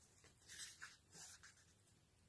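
Faint rustle of a picture book's paper pages being turned and handled: two soft swishes in the first second and a half, then near silence.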